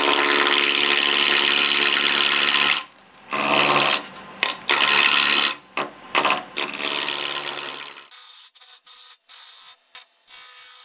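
Half-inch bowl gouge cutting glued-up walnut blocks spinning on a wood lathe at about a thousand RPM: a rough, scraping cut made in several passes with short breaks, stopping about eight seconds in.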